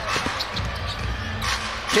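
A basketball being dribbled on a hardwood court, a few sharp bounces over the steady murmur of an arena crowd.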